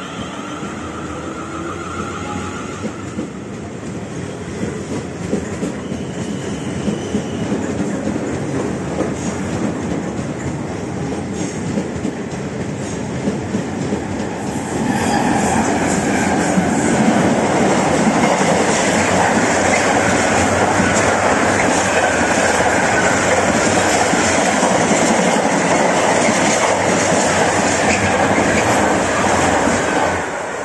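Class 450 Desiro electric multiple unit pulling out of the platform, its motor whine rising in the first few seconds over wheels clattering on the rails. About halfway a louder, steady rumble and clatter takes over as a container freight train passes on the neighbouring line.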